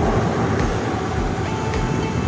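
Loud steady rumbling noise, heaviest in the low end, with faint regular knocks about twice a second.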